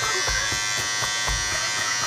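Electric shaver buzzing steadily.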